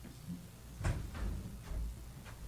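Handling noise on a live handheld microphone: a sharp knock about a second in, then low thumps and rumbling as it is moved about.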